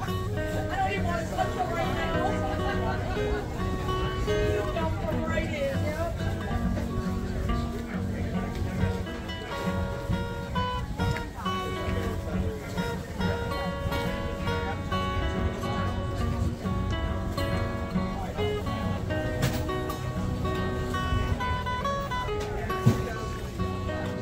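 Acoustic guitar played solo, a melody of picked notes ringing over bass notes, with a single sharp knock near the end.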